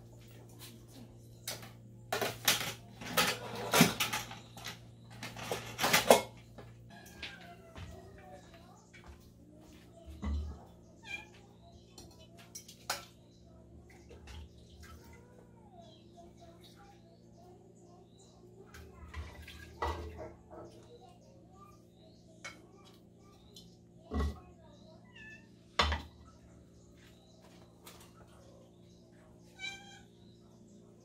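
Dishes clattering and knocking for a few seconds near the start, as a plate of food is served, then scattered single thumps and faint animal calls over a steady low hum.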